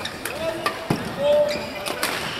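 Badminton rally on an indoor court: sharp hits of rackets on a shuttlecock, the strongest a little before the middle, with shoes squeaking on the court mat.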